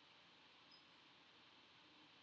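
Near silence: faint steady room-tone hiss while the microphone picks up no speech.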